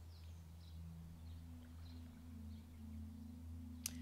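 Faint, low, sustained drone of a few steady held tones, with higher notes joining in the first second: a quiet, somber music underscore with no beat or melody.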